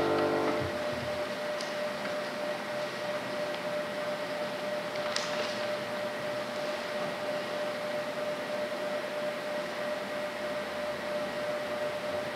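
A digital piano's last chord dies away in the first second. Then steady room tone: an even hiss with a constant mid-pitched hum, and two faint clicks.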